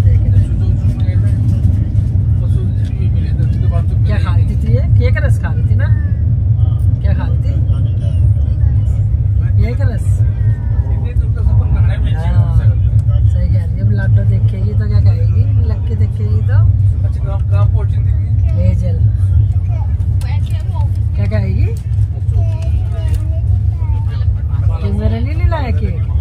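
Steady low rumble of a moving passenger train heard from inside the coach, with indistinct voices over it.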